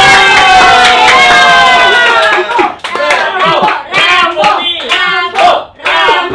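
A loud drawn-out vocal cry held for about two seconds and sinking slightly in pitch, then choppy excited vocalising mixed with sharp hand claps.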